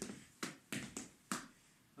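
Four sharp percussive strikes, unevenly spaced, from an Afro-Peruvian zapateo dancer performing one short movement cell.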